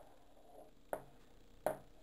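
Two short knocks about three quarters of a second apart: a ceramic bowl, just used as a template for tracing a circle, being set down on a hard countertop.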